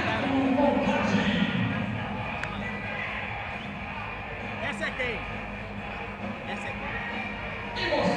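Indistinct voices with music playing underneath, louder for the first second or two, with a couple of short clicks in the middle.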